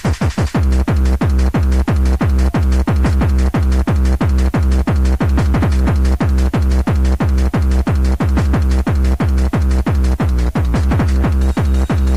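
Fast electronic dance music in the free-party tekno style: a kick drum on a steady beat of about three strikes a second, with a heavy bass line that comes in about half a second in.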